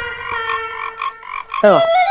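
Comic sound effect from a TV sitcom's background score: a held, croaky tone pulsing about four times a second, then a quick falling swoop about one and a half seconds in that bends back upward.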